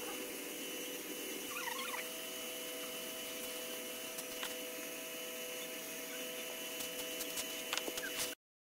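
Quiet steady background hiss and hum, with a brief squeaky chirp about a second and a half in. Near the end come a few light, sharp clicks of wooden mould boards being set down on a tiled table.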